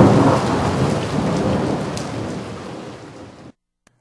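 Thunder rumbling with heavy rain, loudest at the start and fading steadily before cutting off abruptly about three and a half seconds in.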